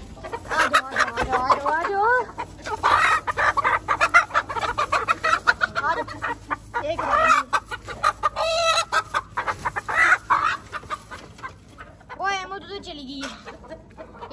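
Chickens clucking and calling in short, wavering bursts, several times over, mixed with scattered rattles and knocks from the wire-mesh coops being handled.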